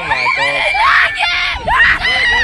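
Several riders on a swinging pirate-ship ride screaming together, their overlapping cries rising and falling in pitch as the ship swings.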